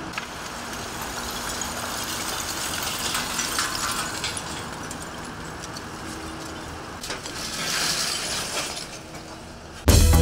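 Hydraulic excavator at work on a demolition site, its engine humming under the clatter of broken masonry and debris tipping from the bucket into a dump truck. A louder rush of rubble comes about seven to eight seconds in.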